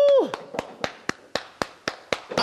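A voice holding one long note that ends a fraction of a second in, then slow, even hand claps, about four a second, each echoing briefly off the round wooden galleries of the open-air theatre.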